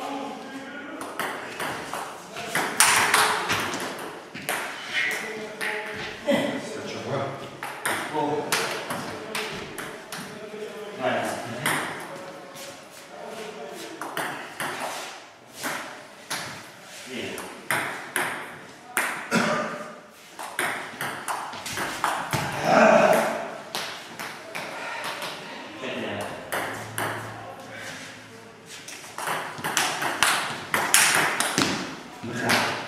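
Table tennis ball clicking off bats and table in quick, irregular rallies, over people talking in a hall.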